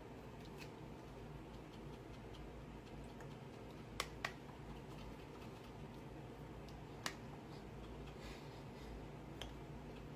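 Faint steady room hum with a few short sharp clicks: two close together about four seconds in, a single one about three seconds later, and a weaker one near the end.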